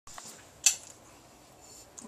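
A single sharp metallic clink about two-thirds of a second in, with a few faint clicks before it, from a large kitchen knife being handled as a champagne bottle is readied for sabering.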